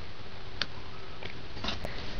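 A GHD flat iron handled on a plaited pigtail: a few faint clicks over a steady background hiss, one about half a second in and a small cluster near the end.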